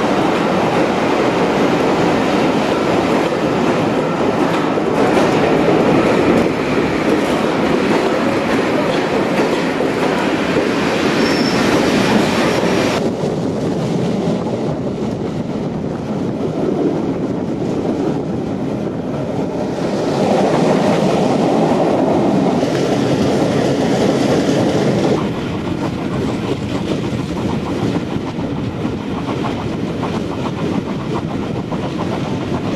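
Train hauled by the Bulleid West Country class steam locomotive 34027 Taw Valley running along the line, its wheels clattering over the rail joints. The sound turns suddenly duller about 13 seconds in and drops again near 25 seconds.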